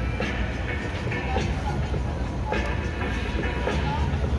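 Busy outdoor crowd ambience: music playing and people talking over a steady low rumble, with occasional small knocks.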